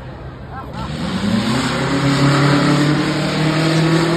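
Car engine accelerating hard: its note climbs steeply from about a second in, then holds steady at high revs as the car builds speed along the track.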